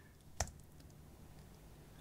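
A single short click at the computer about half a second in, over faint room tone.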